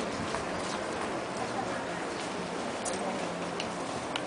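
Shop ambience: steady background noise with faint, indistinct voices and a few light clicks.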